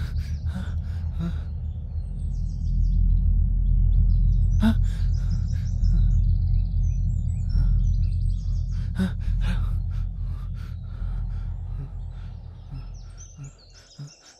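A low, steady rumble that swells in the middle and fades away near the end, with faint bird chirps above it and a few light clicks.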